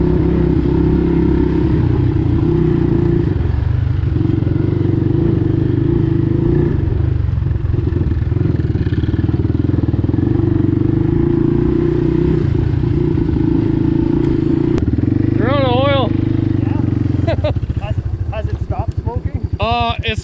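All-terrain vehicle engines running steadily at trail-cruising speed, then dropping to a slower, pulsing note near the end as the machines slow down.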